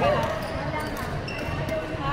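Indoor sports hall between badminton rallies: indistinct voices and players' footsteps on the wooden court, with the hall's reverberation.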